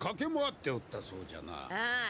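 Japanese dialogue from an anime soundtrack: voices speaking in short phrases, then a louder, higher, wavering voice near the end.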